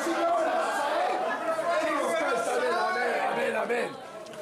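Several voices shouting and talking over one another at once, a jumbled hubbub in which no clear words stand out.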